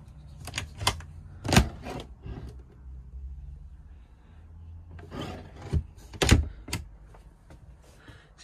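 Overhead wooden locker in a camper van being opened: a string of sharp clicks and knocks from its catch and door, with rubbing and handling noise in between.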